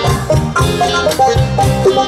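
Live stage band playing an instrumental introduction with a steady drum beat before the vocal comes in.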